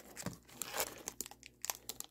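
Small clear plastic zip bag crinkling and rustling in the fingers as it is opened, with irregular little crackles.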